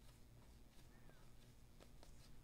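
Near silence: faint low room hum, with a light rustle of cardboard trading cards being shuffled through in the hands near the end.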